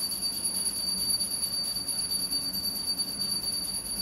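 A steady high-pitched whine with a fainter, higher tone above it, unchanging, over a background hiss and a faint low hum.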